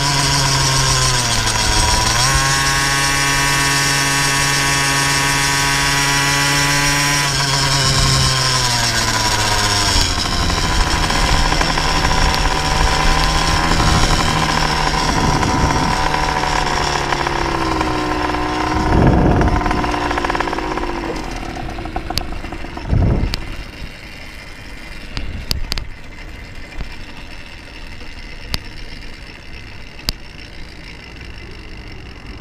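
KTM 50 SX two-stroke single-cylinder engine on a motorized bicycle, running hard at high revs. Its pitch dips and climbs twice, holds steady, then falls away about two-thirds of the way through as the bike slows. After that there is a quieter, noisy sound with scattered clicks.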